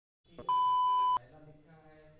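A single electronic beep: one steady, high tone lasting under a second, starting about half a second in and cutting off suddenly, followed by faint voices.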